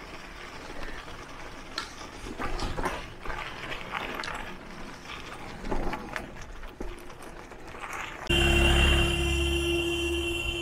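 Mountain bike rolling over a rough gravel lane: tyres crunching on loose stones with irregular rattles and clicks from the bike. About eight seconds in the sound changes abruptly to a louder steady hum with a low rumble and a high tone, street traffic.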